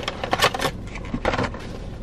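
Plastic packaging crinkling and containers knocking as food is rummaged out of a fabric lunch bag, in a few short bursts of crackling and clicks.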